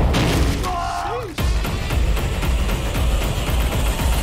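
Horror film trailer soundtrack with tense music and low booms. About a second in there is a brief wavering tone, then an abrupt cut and a loud crashing hit that runs on as a noisy rush.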